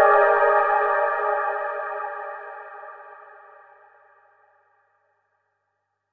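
A single sustained synthesizer chord ringing out and fading away over about four seconds at the end of a track.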